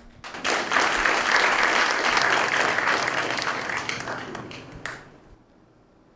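Audience applauding. It starts about half a second in and fades away over the last couple of seconds.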